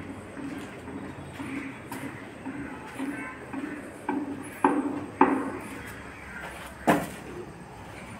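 Footsteps on a gritty concrete floor, about two a second, with three sharp knocks in the second half, the last the loudest.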